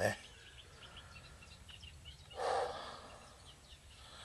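Quiet lakeside ambience: faint bird chirps over a light wind rustling in the trees. About two and a half seconds in there is one short, breath-like rush of noise.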